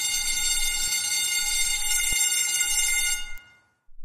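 An electric school bell ringing continuously, then stopping about three and a half seconds in with a short fade.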